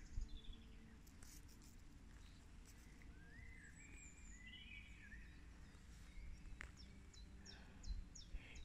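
Near silence in woodland: faint birds chirping and singing, clearest in the middle and again near the end, over a low steady rumble. A few soft clicks.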